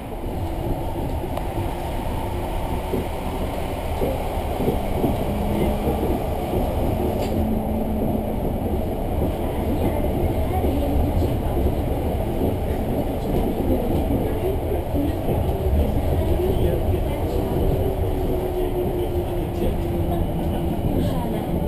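Cabin noise of an elevated transit train in motion: a steady low rumble of the running gear with a faint motor whine that shifts in pitch. It grows a little louder over the first few seconds.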